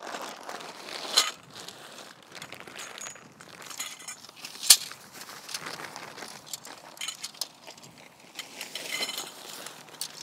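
Tent pole sections clinking and rattling against each other as they are taken out and laid out on the grass, with scattered light clicks; one sharp clink a little before halfway is the loudest.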